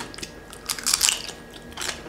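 Crunching bites into crisp roast-pig skin, with chewing between; a cluster of loud crackly crunches comes about a second in and another near the end.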